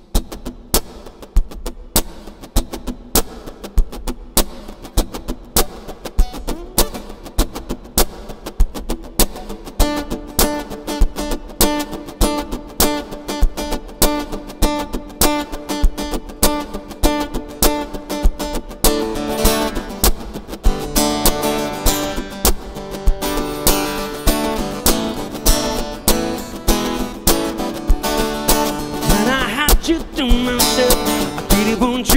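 Acoustic guitar played live, picked notes over a steady percussive beat of about two strikes a second. The part fills out from about ten seconds in and gets busier again after about nineteen seconds. Near the end a voice slides upward as the singing begins.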